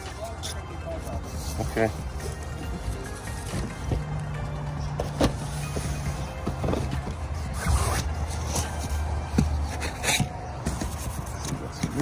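Cardboard shipping cases being opened and handled, with scattered short taps and rustles as a hand moves over the boxed vinyl figures packed inside. A low steady hum runs underneath for several seconds in the middle.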